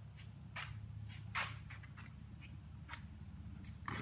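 Wooden kinetic sculpture running, its plywood wheels and mechanism giving faint, irregular light clicks and taps over a low steady hum.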